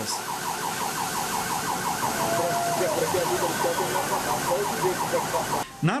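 Emergency-vehicle siren on a fast yelp, several rising sweeps a second, over a steady hiss; it cuts off shortly before the end.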